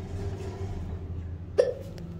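Schindler passenger lift car's steady low hum as it travels between floors, with one short, sharp click or knock about a second and a half in.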